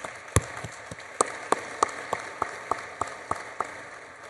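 Audience applauding in a large hall, with one person's claps standing out close to the microphone at about three a second; the applause fades toward the end.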